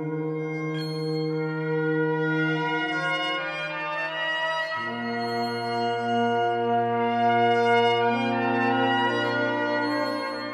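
Sustained, layered trumpet tones from a mutantrumpet, whose sampled and computer-processed sound loops back into a held chord. The lower notes step down to a new chord about five seconds in and change again near eight seconds.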